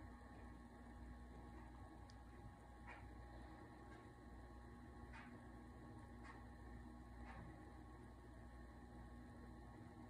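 Faint steady hum of a desktop computer running, with a few faint clicks.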